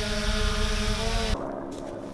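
3DR Solo quadcopter hovering overhead, its propellers giving a steady hum of several tones, with wind rumbling on the microphone. The hum cuts off suddenly a little after a second in, leaving a much quieter background.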